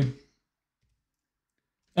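Near silence in a pause between a man's words: his speech trails off just after the start and resumes right at the end.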